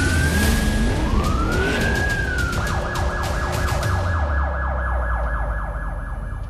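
Police siren sound effect in a news title sting. It opens with a sudden burst of noise, winds up in a rising wail, then switches about halfway through to a fast, rapidly repeating yelp over a low rumble.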